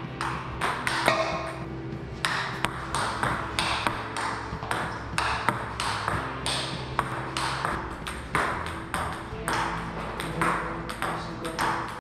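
Table tennis ball clicking repeatedly off rubber paddles and the tabletop in a fast, irregular rally-like series of sharp clicks.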